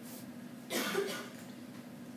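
A single short cough about two-thirds of a second in, lasting about half a second, over a steady low electrical hum.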